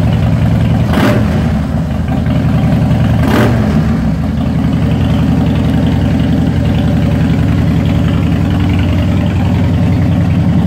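A 2007 Harley-Davidson Dyna Wide Glide's 1584cc Twin Cam 96 V-twin idling steadily, with two brief sharp clicks about one and three and a half seconds in.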